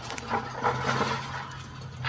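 Light, uneven rattling of a metal mesh garden cart loaded with plastic buckets as it is moved over grass.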